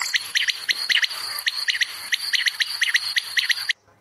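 Quail calling: a rapid, irregular run of short high chirps over a steady high-pitched whine, stopping abruptly near the end.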